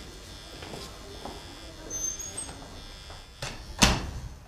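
Heavy ward door banging shut with one loud thud near the end, a lighter knock just before it, over a low steady hum.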